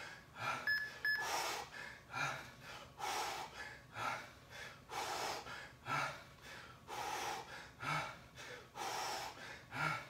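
A man breathing hard through a set of resistance-band triceps kickbacks, with a forceful, hissy breath on each rep about once a second.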